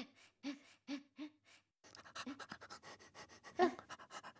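Dog panting: a few slower breaths about half a second apart, then quick rapid panting from about halfway through.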